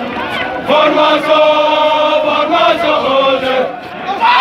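A column of soldiers chanting a song together in unison as they march, their voices holding long notes from about a second in.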